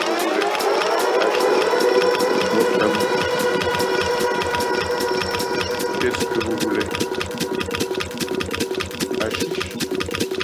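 Techno: a rapid, steady run of electronic percussion hits under a synth sound that sweeps upward at the start and then holds a steady tone.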